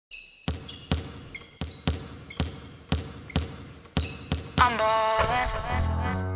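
A basketball being dribbled, about two bounces a second, each bounce ringing briefly, with a few short high squeaks between bounces. Near the end a rapped voice comes in over a music beat.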